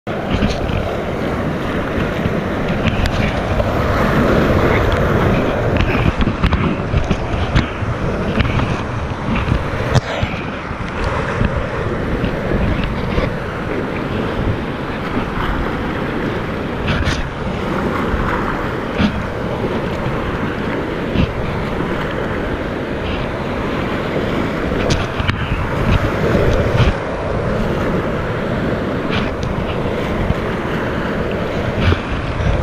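Whitewater rapids rushing and splashing around a kayak, with water and wind buffeting the microphone. A scattering of sharp knocks and splashes breaks through the steady rush.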